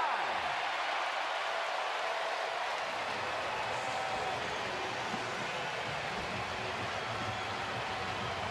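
Ballpark crowd cheering and clapping for a home run, a steady wash of noise heard through a TV broadcast.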